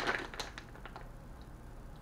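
Plastic soft-bait package handled and turned over in the hands, giving a few faint crinkles and clicks in the first second, then only faint room sound.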